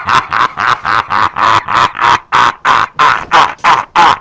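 A man laughing hard in a long, breathy run of 'ha' bursts, about three a second, cutting off near the end.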